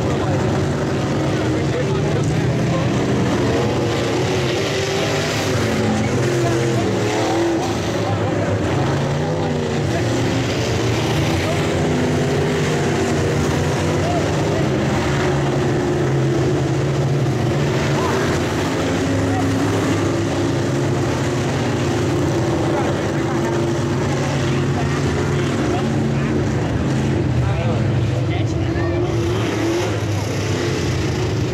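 Sport modified dirt track race cars running laps, several engines going at once, their pitch rising and falling as the cars pass.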